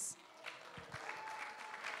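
Congregation applauding lightly, a soft crackle of many hands clapping that sets in about half a second in.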